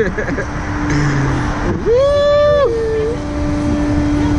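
A rider's voice: one high, held cry about two seconds in that slides up, holds and drops away. A steady low hum and a wash of noise run under it.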